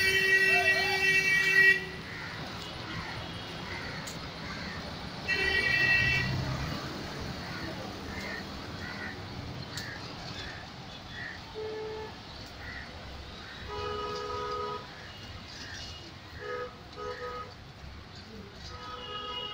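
City street traffic with vehicle horns honking over a steady traffic noise. One horn is held for about two seconds at the start, another sounds about five seconds in, and shorter honks come near the end.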